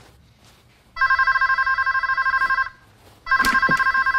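Electronic telephone ringing: a warbling ring that trills rapidly between two tones, lasting nearly two seconds, followed by a second ring that starts near the end.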